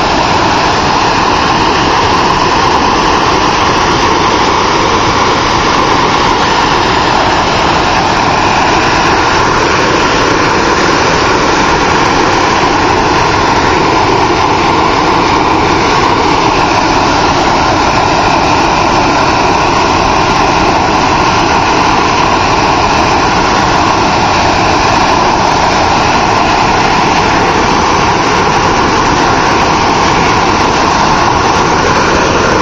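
Lucky Peak Dam's outlet conduits discharging a high-pressure flood-control release: two jets of water blasting out and crashing into the river spray in a loud, steady rushing roar that does not let up. It is the yearly release that lowers the reservoir to take in snowmelt.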